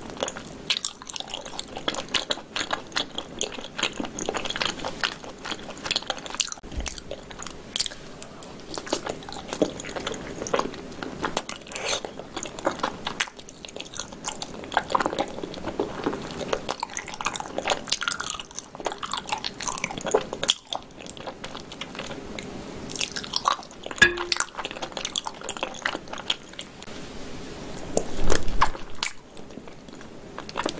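Close-miked chewing and biting on spicy sauced pig's tail: wet mouth sounds and small clicks as the meat is gnawed off the tail bones, with a few louder bites near the end.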